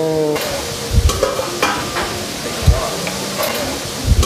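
Butter pan sauce poured from a hot skillet over shrimp on a plate, with clicks and knocks of the metal pan and tongs. Two dull thumps come about one second and nearly three seconds in.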